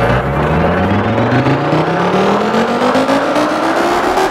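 Psytrance track in a build-up: a rising sweep climbs steadily in pitch over the four seconds, while the deep bass thins out after about a second and comes back near the end.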